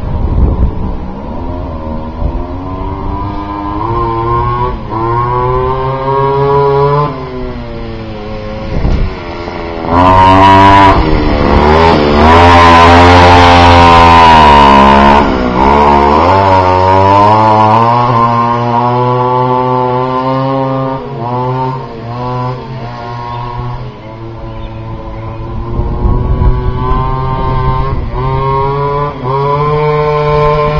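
Goped Xped gas scooter's G23LH two-stroke engine running under throttle, its pitch rising and falling as the rider accelerates and lets off. It comes closest and loudest about ten to fifteen seconds in, its pitch dropping as it goes by, then runs on farther off.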